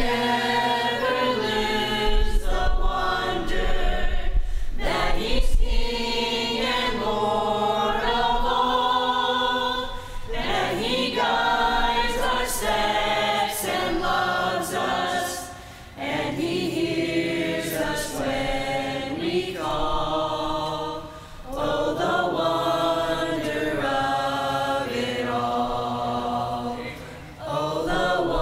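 Youth group singing a chorus together, in sung phrases broken by short pauses about ten, sixteen and twenty-one seconds in.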